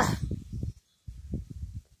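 Low, ragged rumbling noise on a phone microphone, cutting out to silence about a second in and again near the end.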